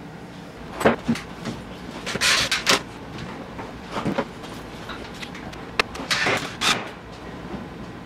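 Intermittent knocks and short scraping rasps of a spirit level and a wooden drum hanger being handled against a plywood wall, with a sharp click a little before the six-second mark.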